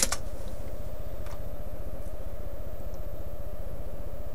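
Steady low background hum in a small room, with a keyboard keystroke right at the start and a couple of faint clicks later.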